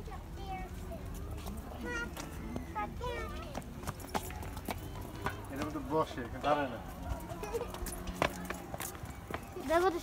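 Young children's high voices calling and chattering, with scattered shoe taps and knocks on brick paving.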